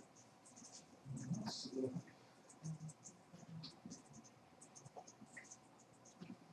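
Faint room noise with scattered small clicks and rustles. A brief muffled low sound comes about a second and a half in.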